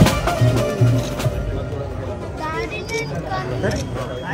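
Drums beating in a fast rhythm that stop about a second in, followed by several people talking over one another in a crowd.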